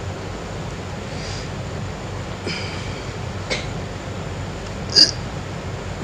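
Steady hiss and low hum of an old recording, with a few faint short sounds and one brief, sharp high-pitched sound about five seconds in.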